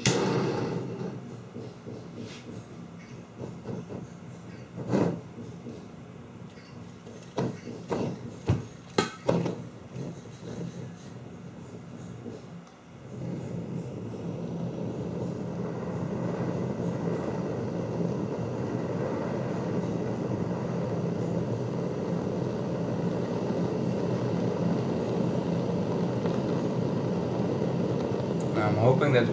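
A few sharp knocks and clicks, then, about halfway through, a gas blowtorch lit and burning with a steady rushing flame that grows slightly louder, used to burn the enamel off enamelled copper motor wire.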